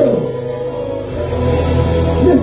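Live band playing the backing of a gospel rap song, with a steady bass note that steps lower about a second in.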